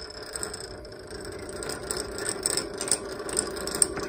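Magnetic stirrer running steadily, its motor humming while it spins a stir bar in a glass jar of liquid culture to break up the mycelium, with faint irregular ticks over the hum.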